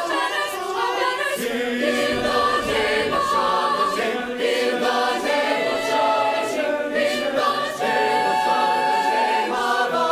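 Mixed choir of men and women singing in harmony, with long held notes.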